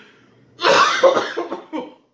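A man coughing in a quick run of four or five coughs, starting about half a second in and stopping just before two seconds.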